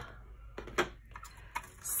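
A clear plastic box being opened by hand: several light clicks and taps of its plastic lid.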